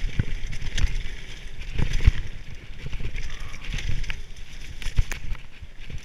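Mountain bike riding fast down a gravel trail: a steady hiss of the tyres rolling over loose stones and grit, with a low rumble. The bike rattles and knocks sharply over bumps, four times most strongly.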